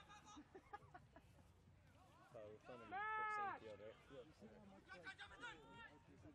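Distant voices shouting during rugby play: one long call that rises and falls about three seconds in is the loudest thing, with shorter shouts near the end.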